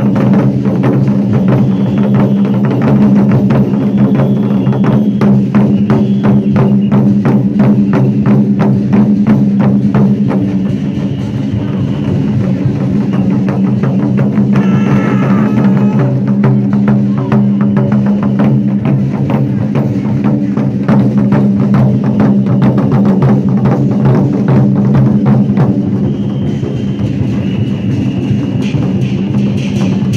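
An ensemble of large Chinese barrel drums beaten with sticks in fast, dense strokes, over a steady low drone.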